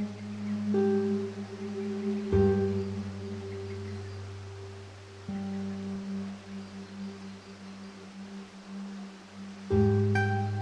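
Slow classical guitar music: single plucked notes and low chords, each left to ring and fade, with a new one every two to three seconds.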